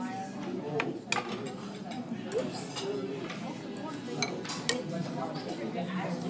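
A few sharp, separate clinks of a wooden chopstick against a ceramic bowl, with the murmur of restaurant chatter behind.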